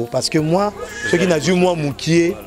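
A man speaking animatedly, his voice rising and falling in pitch without a break.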